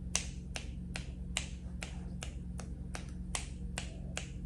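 A person snapping their fingers over and over in a steady rhythm, about two and a half snaps a second, over a faint low hum.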